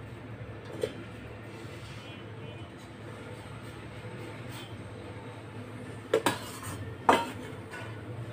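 Stainless steel saucepan knocking against a counter as it is handled and set down: a small clink about a second in, then two quick clanks and a louder clank near the end with a short ring.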